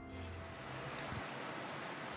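Faint, steady outdoor ambient rushing noise, with a low hum under it that stops about a second in.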